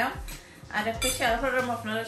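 A metal spoon clinking a few times against a bowl of puffed rice as it is stirred.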